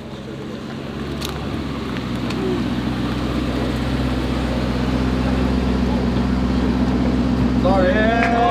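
Lamborghini Urus's twin-turbo V8 running at low speed as the SUV pulls up, a steady low engine note growing louder. Voices start near the end.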